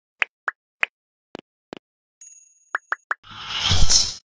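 Cartoon sound effects: a string of short, quick pops and clicks, some pitched, spaced irregularly, followed in the last second by a noisy swell that builds to the loudest point just before the end.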